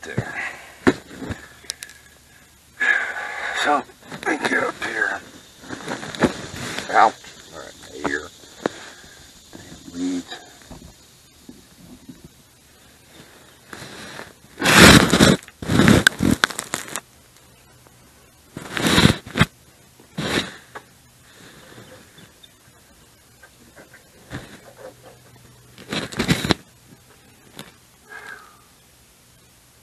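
Indistinct talking during the first several seconds, then a few loud, brief, noisy sounds spread through the rest.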